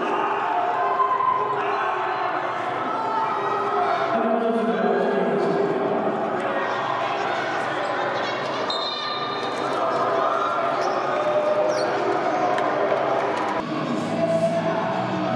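Basketball arena during live play: a ball bouncing on the court amid the crowd's voices and chatter.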